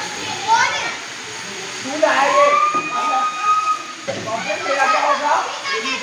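Children's voices shouting and chattering while they play, with one long, high held shout about two seconds in.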